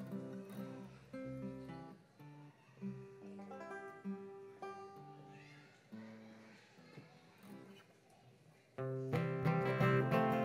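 Acoustic guitar picking a quiet, sparse intro to a folk song; about nine seconds in, the rest of the bluegrass band comes in together, much louder and strumming.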